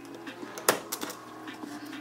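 Small metal clicks and ticks of a screwdriver prying the spring clip out of the top of an LS hydraulic lifter, with one sharper click about two-thirds of a second in.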